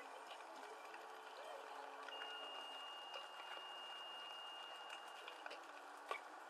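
Faint outdoor background with distant, indistinct voices. A steady high tone starts about two seconds in and holds for about three seconds.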